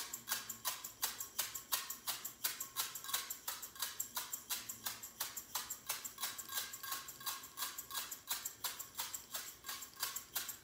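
Homemade maraca, a small lidded glass jar of dried uncooked rice, shaken steadily in a regular rhythm of about four to five shakes a second, the rice rattling against the glass.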